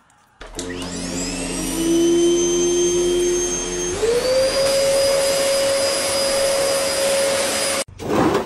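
A vacuum cleaner switches on about half a second in, its motor whine rising as it spins up. About four seconds in, its hum steps up in pitch, and it cuts off suddenly just before the end.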